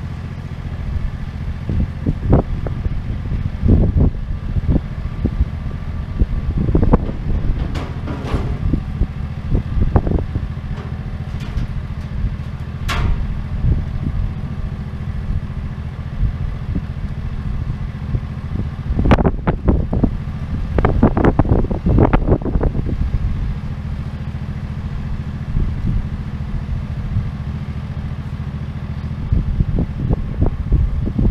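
Wind buffeting the camera's microphone: a steady low rumble with irregular crackles and gusts, busiest about two-thirds of the way through.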